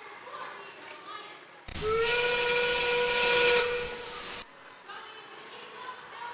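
Train whistle sound over the arena PA, the FRC field's endgame warning at 30 seconds left: one held whistle about two and a half seconds long, rising briefly into its pitch at the start and cutting off suddenly, over arena crowd murmur.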